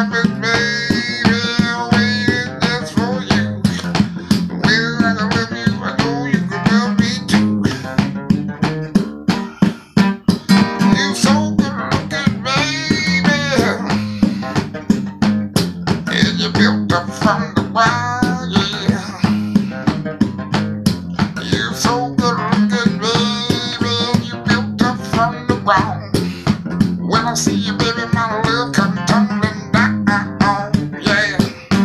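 An acoustic guitar strummed in a steady blues rhythm, with a man's voice singing a bending, drawn-out melody over it.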